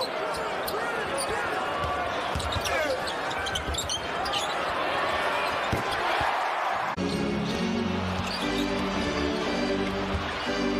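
Arena crowd noise with sneakers squeaking on the hardwood court and a basketball bouncing. About seven seconds in, it cuts suddenly to background music with steady held notes.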